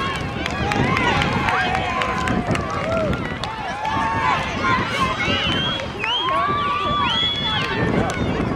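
Indistinct, high-pitched voices of girls and spectators shouting and calling out across a soccer field, many overlapping with no clear words.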